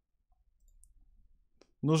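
Near silence with one or two faint, short clicks; a man starts talking near the end.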